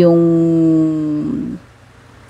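A woman's voice drawing out a filler word ("yung...") into one long, level-pitched hum lasting about a second and a half while she searches for the next word, then breaking off into a pause.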